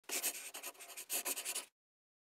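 Scratching sound effect of an intro logo sting, made of rapid fine strokes in two bursts, the second starting about a second in, cutting off suddenly shortly before the end.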